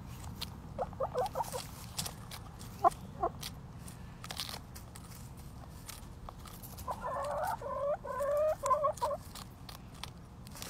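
Backyard hens clucking and making short calls in a few brief bursts, with a longer run of overlapping calls near the end. Sharp clicks throughout as their beaks peck at and tear a lettuce leaf.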